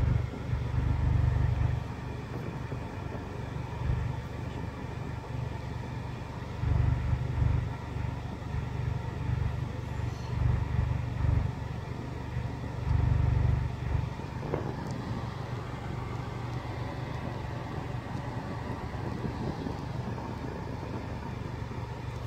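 Low, steady rumble of a car engine idling, heard from inside the cabin, swelling louder three times.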